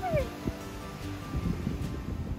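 A woman's high laugh or squeal that slides down in pitch in the first half-second, over quiet background music.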